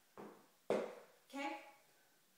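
A person doing a burpee with dumbbells, rising from a crouch: a soft scuff, then one sharp knock a little under a second in, then a brief voiced breath or grunt of effort.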